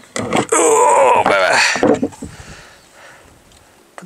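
A man's voice making a drawn-out exclamation of about two seconds, its pitch rising near the end, followed by quiet.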